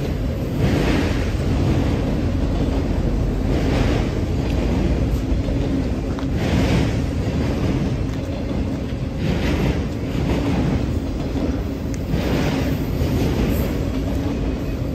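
Freight train of autorack cars rolling past at close range: a steady low rumble of steel wheels on rail, with a burst of wheel clatter about every three seconds as each car's wheel sets pass.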